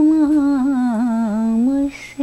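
A woman singing solo without accompaniment, holding long, wavering, ornamented notes. The melody dips lower in the middle and rises again toward the end.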